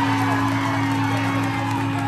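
Electric guitars droning through their amplifiers: several steady, sustained tones held without rhythm.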